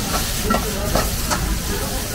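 Vegetables stir-frying in steel woks over gas burner flames, sizzling steadily over a low burner rumble. Three short metal clanks come from the wok and utensil as the cook stirs and tosses.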